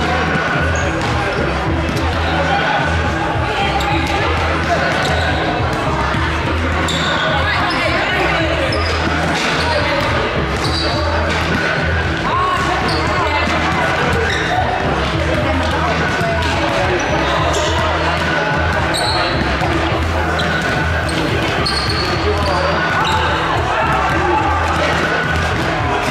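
Basketballs bouncing on a hardwood court in a large, echoing gym, over a steady murmur of voices from players and a small crowd.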